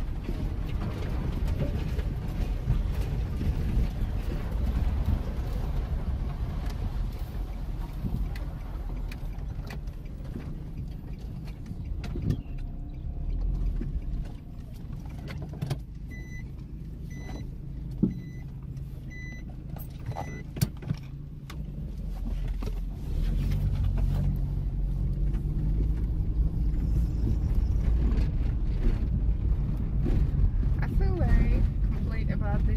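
The Nissan March's small four-cylinder engine running, heard from inside the cabin as a steady low rumble. It eases off for several seconds mid-way, during which a dashboard chime gives about seven short beeps, then the rumble builds again near the end.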